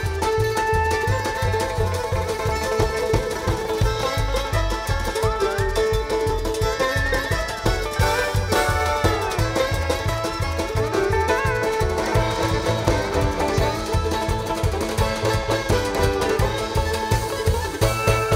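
A live bluegrass-style string band plays an instrumental passage with fiddle, banjo, mandolin, upright bass and drums. The bass and drums keep a steady beat, while sliding, bending melody lines run over the top.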